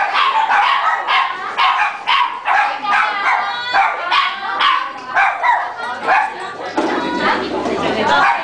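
Small dog yapping repeatedly in short, high-pitched barks, about two a second, with people talking around it.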